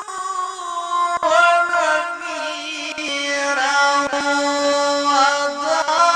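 A male qari reciting the Quran in a melodic, ornamented chant. One long sung line breaks briefly about a second in, settles into a long held low note in the second half, and rises again near the end.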